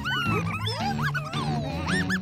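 Cartoon slug creatures chirping and squeaking in quick rising and falling glides over background music with a steady bass line.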